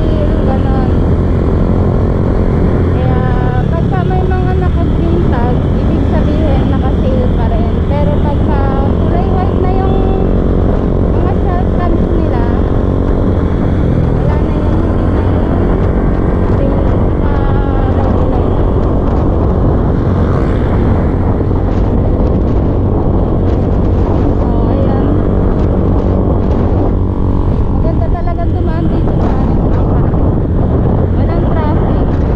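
Motor scooter running steadily at cruising speed, its engine hum mixed with heavy wind and road noise on the rider's microphone.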